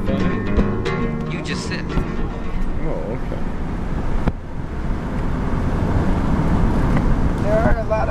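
Car interior sound while driving slowly: a steady low rumble of engine and road, with music playing during the first few seconds. The music stops at an abrupt cut about four seconds in, after which only the road rumble goes on, and a voice is heard briefly near the end.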